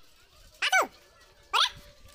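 A dog barking: two short, high yelping barks about a second apart, each dropping sharply in pitch.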